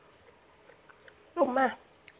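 Quiet room with a few faint clicks, then a woman's short, loud spoken exclamation near the end.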